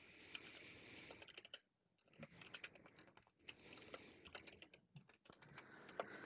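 Faint typing on a computer keyboard: quick runs of key clicks with brief pauses.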